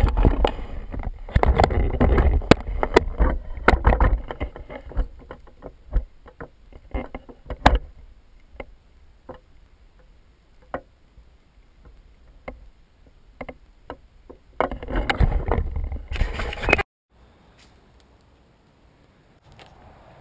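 Shoes burning in a metal bucket, the fire crackling and popping. The first few seconds are loud, with a low rush and dense pops; after that the crackles come sparser. Another loud rush comes around fifteen seconds in and cuts off suddenly.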